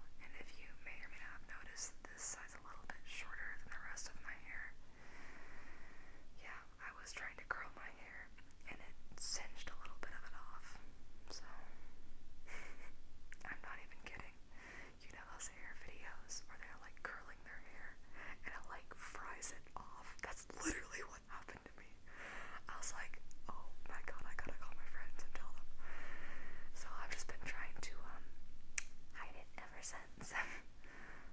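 Whispered speech: a woman whispering at length.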